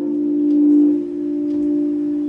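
The last note of a karaoke backing track ringing on as one steady, almost pure tone after the guitar and singing have stopped.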